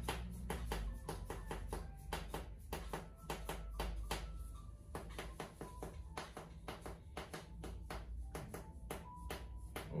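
A rubber mallet repeatedly striking the end of a rod held against a patient's shoulder: percussive soft-tissue therapy, a rapid steady run of taps, several a second.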